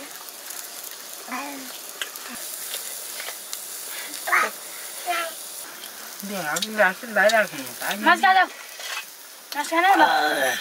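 A steady sizzling crackle from a cooking fire, under women's and children's voices that start talking about six seconds in.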